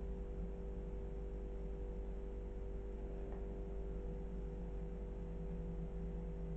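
A steady low hum with two steady tones held throughout, the drone of a running appliance or fan in the room, with a faint tick about three seconds in.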